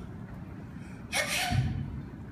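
A man gasping loudly once, a short strained breath with a voiced edge, about a second in.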